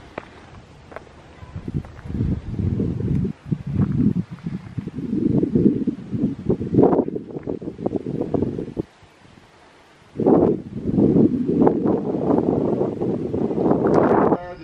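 Wind gusting against the microphone: a loud low rumble that swells and falls unevenly, dropping away briefly twice, the second lull lasting about a second and a half.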